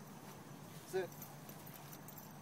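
A single firm spoken 'sit' command to a dog about a second in, over a faint steady low hum.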